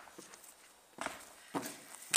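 Footsteps on grass and fallen leaves: two soft steps, about a second in and again half a second later.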